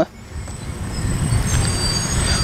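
Rumble of a passing motor vehicle, growing steadily louder, with a few faint thin high whistling tones over it.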